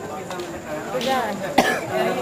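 Voices talking, with one short, sharp burst about one and a half seconds in.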